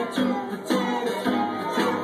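A recorded song played from a portable CD player, in an instrumental stretch of plucked and strummed acoustic guitar notes about twice a second, with no singing.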